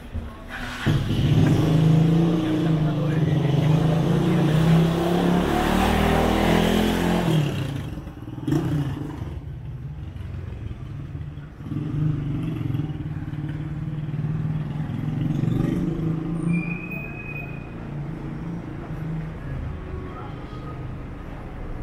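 Motor vehicles passing close on a cobbled street: a loud engine and tyre rush for the first several seconds that dies away about seven and a half seconds in, then a second, quieter engine from about twelve seconds in, its pitch rising and falling.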